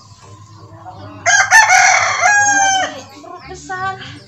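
A rooster crowing once, loud, starting about a second in and lasting nearly two seconds, its pitch falling at the end.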